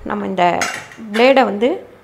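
A woman speaking briefly, with a light metallic clink of the gas stove's burner parts being handled about half a second in.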